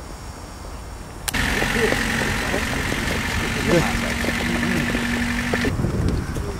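A car engine idling, starting suddenly about a second in, with people talking faintly in the background.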